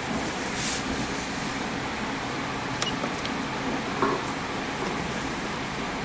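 Steady background hum and hiss, with two faint clicks about three seconds in.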